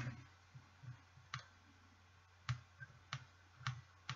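About seven light, irregularly spaced clicks as a glowing twisted 26-gauge kanthal coil is pulsed on the vape mod and pinched back into shape with ceramic tweezers.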